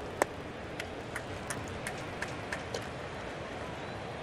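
Ballpark crowd murmur with one sharp pop shortly after the start, a 95 mph four-seam fastball smacking into the catcher's mitt. It is followed by a run of evenly spaced claps, about three a second, that stops near the end.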